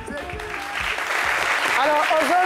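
An audience applauding, the clapping building up about half a second in as the music stops; a voice starts in over it near the end.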